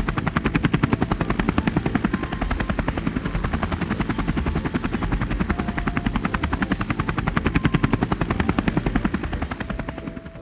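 Helicopter in flight, its rotor blades beating in a rapid, steady chop.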